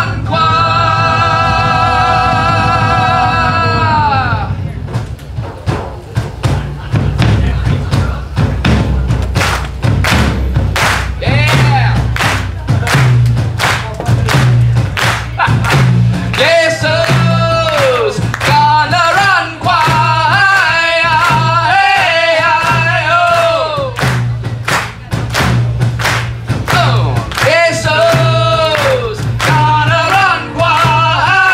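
Live band music: a man sings over strummed electric guitar, drums and bass, holding long wavering notes at the start, about halfway through and near the end, with dense, fast drum and percussion hits throughout.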